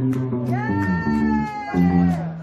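Live band playing: bass and guitar chords with drum hits, and a woman's voice sliding up into a high note about half a second in and holding it to the end.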